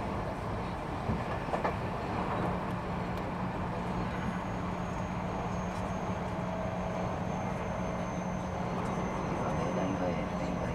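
Keio 1000 series electric train heard from inside the car while running between stations: a steady rumble of wheels on rail with a couple of clicks about a second in. A thin high steady whine comes in about four seconds in.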